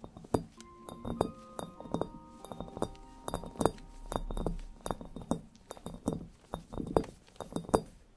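Fingernails and fingertips tapping on a glass crystal ball: quick, irregular clinks, several a second, some leaving a brief ringing tone.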